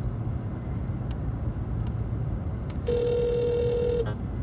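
Phone ringback tone played through a phone's speaker. A low rumble fills about the first three seconds, then one steady ring tone sounds near the end and cuts off as the call is answered by voicemail.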